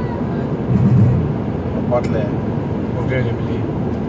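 Steady road and engine noise inside a car cruising on a highway, with a voice sounding over it.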